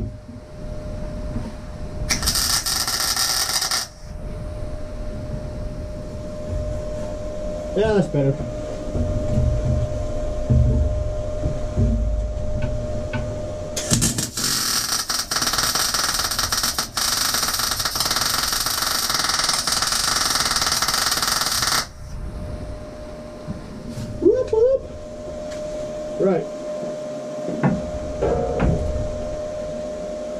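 MIG welder arc crackling and hissing as steel plate is welded: a short tack about two seconds in, then a longer weld run of about eight seconds through the middle.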